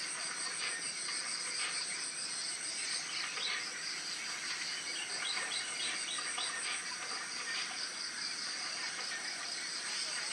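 Insects trilling in a steady, rapidly pulsing high-pitched chorus, with scattered short bird chirps, most of them around the middle.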